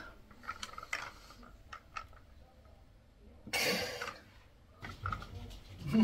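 Faint clicks and clinks of an adjustable dumbbell during a shoulder external-rotation set, with one breathy exhale a little past halfway.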